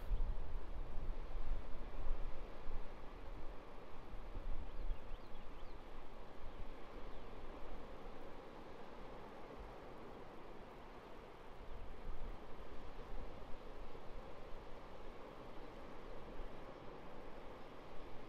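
Ocean surf washing onto a beach: a steady hiss of breaking waves that ebbs a little in the middle and builds again later, over a low, uneven rumble.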